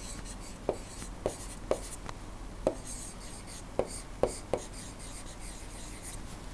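A stylus writing by hand on a tablet screen: a faint scratching with several sharp, irregular taps of the pen tip as strokes and letters are put down.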